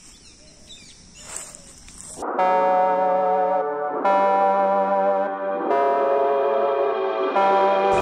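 Faint outdoor ambience for about two seconds, then background music comes in: sustained electronic keyboard chords, each held and changing about every second and a half.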